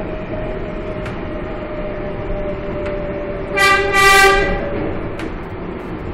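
R142A subway train running, heard from inside the car, with a steady tone over the rumble and a few clicks of the wheels. About three and a half seconds in the train's horn toots twice, a short blast then a longer one.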